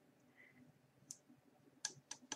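Near silence with two faint, brief clicks, one about a second in and one near the end: the sounds of a glitter-coated glass goblet being handled over a plastic tub.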